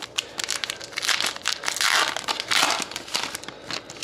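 A foil trading-card pack wrapper being torn open and crinkled by hand. The dense crinkling lasts about three seconds and is loudest in the middle.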